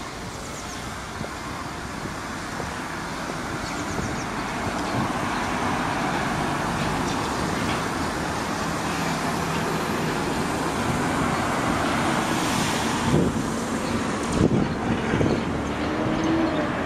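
Road traffic on a city street, a steady noise of passing vehicles that grows louder over the first few seconds, with a few short knocks near the end.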